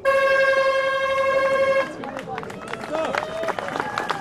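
A loud horn blast: one steady note held for just under two seconds that then cuts off, followed by people talking and scattered clicks.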